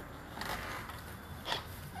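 Quiet room noise with a steady low hum, a soft rustle about half a second in and a short knock about a second and a half in.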